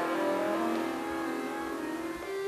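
Button accordion playing softly: a held chord whose upper notes fade, leaving one low note sustained.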